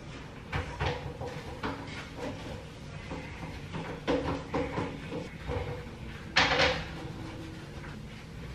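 Toilet being cleaned by hand: scattered light knocks and clunks against the porcelain and seat, with a louder, hissy scrubbing or spraying burst about six and a half seconds in.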